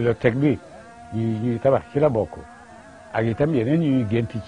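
Only speech: a man talking in short phrases with brief pauses, some syllables drawn out on a held, wavering pitch.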